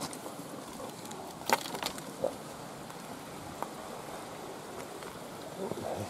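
Steady rushing of a small mountain creek, with a few light clicks and knocks about a second and a half in, again around two seconds, and once more past three and a half seconds.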